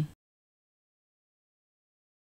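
A voice cuts off a moment in, then complete digital silence.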